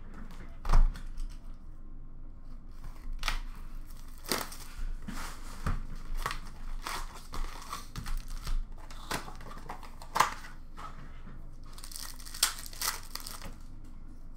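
Upper Deck SP Authentic hockey card packs being torn open, their foil wrappers tearing and crinkling in a string of short rips. A sharp knock about a second in as a box is taken off the stack.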